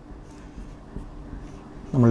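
Whiteboard marker drawing short arrow strokes on a whiteboard, quiet beside the surrounding speech.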